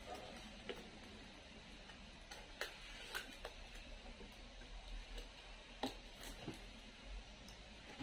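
Faint, scattered light clicks and ticks of fingers handling a plastic-wrapped cardboard box, over a low steady room hum.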